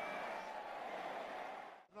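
Faint stadium crowd noise of a televised football match, a low even murmur that fades out to silence near the end.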